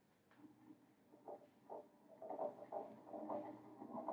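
A ring and a solid disk rolling along a lab benchtop: a faint, uneven rumble with small irregular knocks that grows louder about two seconds in.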